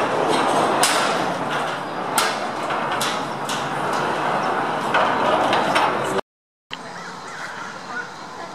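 Aerial tram station machinery: a loud, steady rumble with irregular clacks and knocks as the gondola cabins roll through the station on the cable. It cuts off abruptly about six seconds in, and a much quieter open-air background follows.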